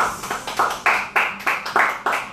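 Two people clapping their hands in a steady, even rhythm, about three claps a second.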